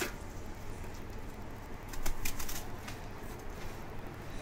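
Knife slicing through a half onion held in the hand, a few quick sharp cuts about two seconds in, over a low steady hum.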